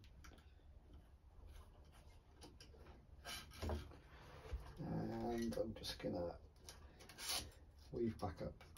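Racket string rubbing and swishing as it is pulled and threaded through a squash racket's strings and frame, in short strokes. A short pitched, wavering voice-like sound, about five seconds in, is the loudest thing.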